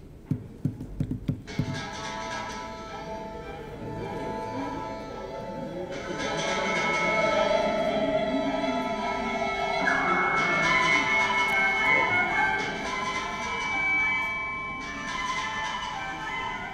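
A recorded film song played back over the room's speakers, starting after a few low thuds in the first second or so and growing fuller about six seconds in.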